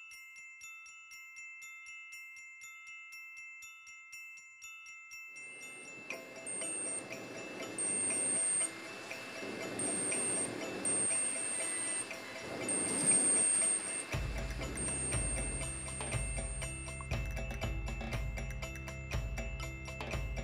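Chime-like background music with mallet-percussion notes. From about eight seconds in, a high-pitched piezo alarm buzzer on a breadboard security-alarm circuit sounds in on-off stretches of about a second, over rustling handling noise, as its wire loops are broken and rejoined. A deeper rhythmic beat joins the music near the end.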